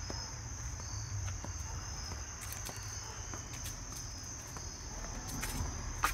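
A steady, high-pitched chorus of crickets chirring, over a low rumble, with a few light taps and clicks.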